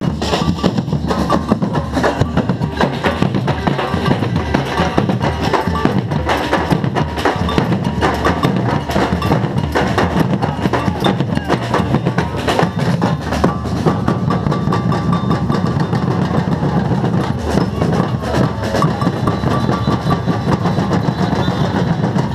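Fast, dense drumming with a heavy bass drum: percussion-led music.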